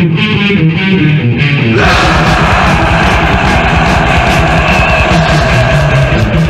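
Death/thrash metal recording, fast and loud. It opens on a distorted electric guitar riff, and about two seconds in the full band comes in with rapid, driving drumming under the guitars.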